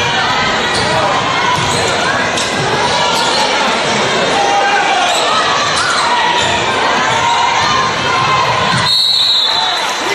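Crowd of spectators shouting and cheering in a gymnasium, with a basketball being dribbled on the hardwood. Near the end a referee's whistle is blown once, a high steady tone about a second long, stopping play for a foul.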